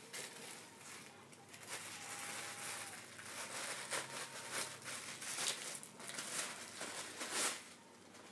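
Plastic garment bag crinkling and rustling as a packaged piece of clothing is pulled out of a cardboard box and unwrapped, with irregular sharper crackles, the loudest near the end.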